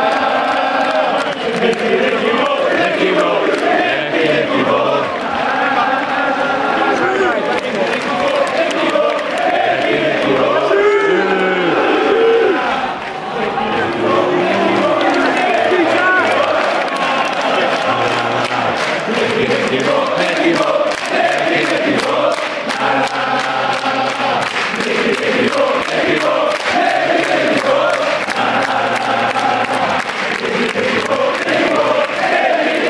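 Large football crowd of mostly male fans singing a chant in unison, loud and continuous, with hand-clapping in the later part and a brief lull about 13 seconds in.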